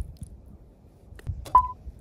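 Metal tongs clicking against a small stainless steel plate while spaghetti is served, ending in one sharp clink about one and a half seconds in that rings briefly as a short high ping.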